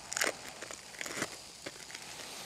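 The plastic wrapper of an individually wrapped American cheese slice crinkling as it is peeled off, in a few short crackles.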